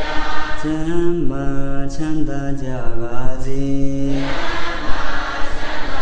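A Buddhist monk chanting in a single male voice, holding long notes that slowly step and glide in pitch.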